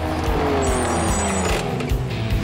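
Cartoon engine sound of a small off-road buggy driving past, its pitch falling over about the first one and a half seconds as it goes by.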